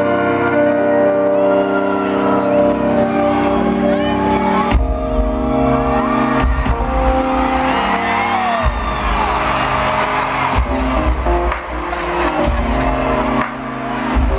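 Live R&B band playing: sustained keyboard chords, with bass and drums coming in about five seconds in, and voices calling out over the music.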